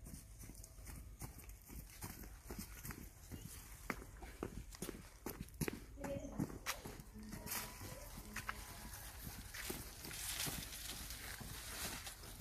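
Irregular footsteps on grass and a paved path, with rustling of leaves and branches as a dug-up shrub with its soil root ball is carried.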